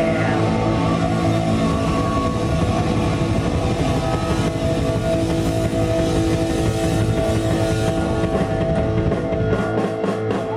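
Live punk rock band playing loud: distorted electric guitar holding sustained notes over a busy drum kit, with no singing.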